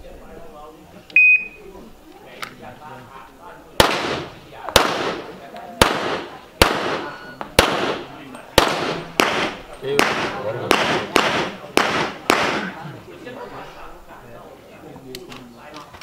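An electronic shot timer's short start beep, then a string of about a dozen sharp pistol shots, unevenly spaced over some eight seconds.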